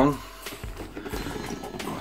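Handling noise from a camera being moved and set down: rubbing and a few light knocks on the microphone.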